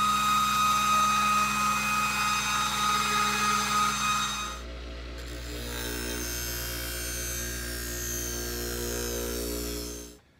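Belt grinder running as a steel sword blade is sharpened against the abrasive belt, a loud steady whine over grinding noise. About four and a half seconds in it gives way to a quieter motor-driven leather strop wheel running with a steady hum as the blade is stropped.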